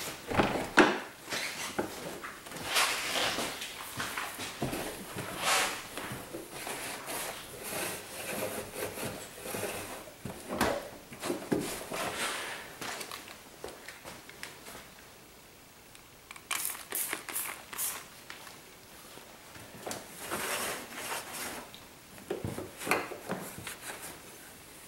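Microfiber cloth wiping and rubbing across the metal underside of a car hood in irregular strokes. A few quick hissing squirts of a spray bottle of detail spray come a little past two-thirds of the way through.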